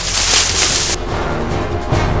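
Background film score of sustained low tones. Over the first second, a loud rustle of feet running through dry leaves and grass, which cuts off abruptly.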